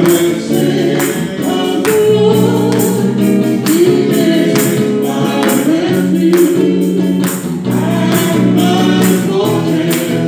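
Gospel worship song: a woman sings the lead through a microphone over electric guitar, with a steady beat.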